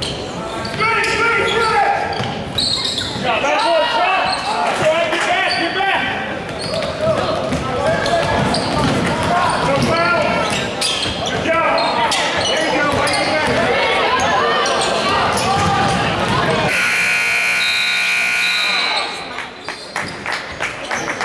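Voices shouting and a basketball bouncing on a hardwood gym floor. Near the end the scoreboard buzzer sounds one long steady tone for about two seconds as the game clock runs out, marking the end of a period.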